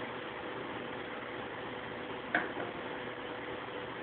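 Steady room noise with a faint hum, and one short light click a little over two seconds in.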